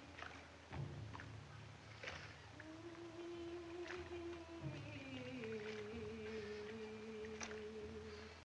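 Faint old film soundtrack: a single woman's voice singing slow, long-held notes, the pitch rising a step about two and a half seconds in and falling lower about five and a half seconds in. A few sharp clicks and a steady hum and hiss lie underneath.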